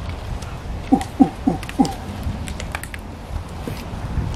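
A person's voice hooting four times in quick succession, each hoot sliding down in pitch, about a second in. A few faint clicks follow.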